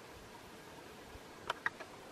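Meltwater dripping from melting icicles: three quick, quiet ticks about one and a half seconds in, over a faint steady hiss.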